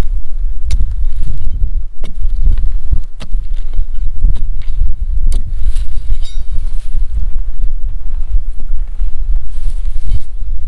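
Wind buffeting the microphone as a constant heavy low rumble, with a few sharp clicks scattered through it.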